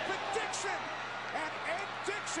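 Football game broadcast audio played back quietly under the reactor's microphone: crowd noise in a stadium, with faint commentator speech.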